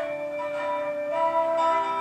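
Instrumental hymn accompaniment: held notes in chords, the harmony moving on every half second or so.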